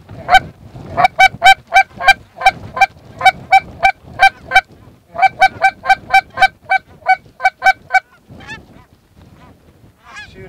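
A hand-blown Canada goose call sounding quick, clipped clucks and honks in runs of about three to four a second, calling to lesser Canada geese circling over the decoys; the calling stops about eight seconds in, and fainter goose calls follow.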